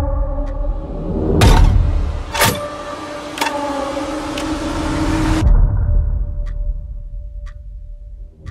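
Cinematic soundtrack: a low rumbling drone under held tones, with a sharp hit about once a second. About five and a half seconds in the tones drop out, leaving the rumble and faint ticks about a second apart.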